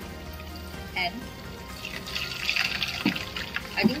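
Flour-coated pork slices deep-frying in hot oil in a small wok: a fine crackling sizzle that grows louder about halfway through.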